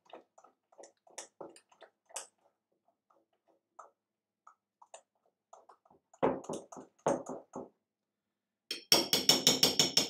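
A utensil stirring thick donut batter in a glass mixing bowl, knocking against the glass: faint scattered taps at first, a few louder strokes about six seconds in, and a quick run of rapid clinks near the end.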